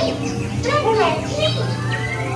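Dark-ride soundtrack: short high, voice-like calls over the ride's background music, with a steady low hum underneath.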